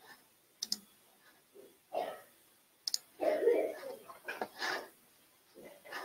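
Sharp computer clicks as the presentation slide is advanced: a quick pair about a second in and one more near three seconds, with quiet muttered speech in between.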